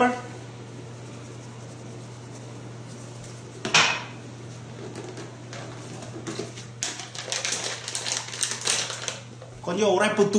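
Spice container being handled and shaken over a bowl of raw chicken drumsticks during seasoning. There is one sharp knock about four seconds in, then a quick run of rattling and tapping lasting about two seconds near the end, over a steady low hum.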